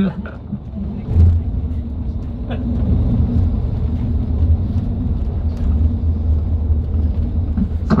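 Steady low rumble of a moving bus's engine and tyres heard inside the cabin, with a single knock about a second in.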